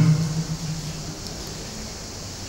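Steady faint hiss of room tone picked up by a microphone, as a man's voice dies away in the first moment.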